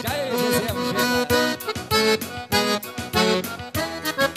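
Todeschini piano accordion playing a lively instrumental introduction to a dance tune, its melody over a quick steady beat of about four ticks a second.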